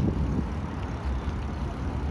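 Steady low rumble of wind on the microphone mixed with the noise of a bicycle rolling over paving tiles.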